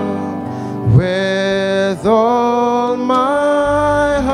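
Church worship music: a man singing slow, long-held notes over instrumental backing, moving to a new note about once a second.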